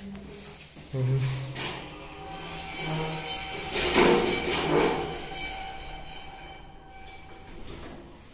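A 1998 KMZ passenger elevator's sliding doors opening and then closing, with clattering and a steady door-motor hum. The loudest clatter comes about halfway through, as the doors reach open.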